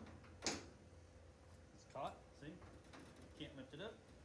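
A single sharp metallic click about half a second in as the retrofitted VW Jetta hood latch on the Chevelle hood is worked by hand.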